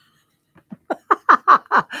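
A woman laughing: a quick run of short bursts, each falling in pitch, starting about half a second in.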